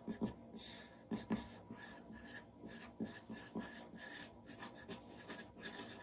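Charcoal pencil scratching over drawing paper in short, quick shading strokes, several a second, with a few louder soft knocks of the point among them.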